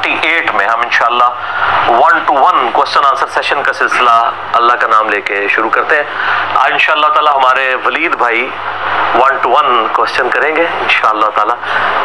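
Speech: a man lecturing without pause, over a faint steady low hum.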